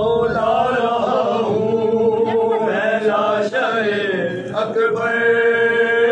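Men's voices chanting a nauha, a Shia Muharram lament, sung unaccompanied in long, slowly bending held notes.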